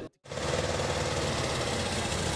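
Soviet GAZ-69 jeep's four-cylinder side-valve engine running at a steady, even beat, coming in just after a brief silent gap.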